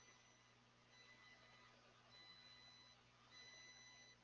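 Near silence: room tone, with faint thin high-pitched tones that come and go.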